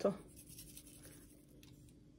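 Faint, light scratchy rattling of sesame seeds being shaken from a small jar onto a salad.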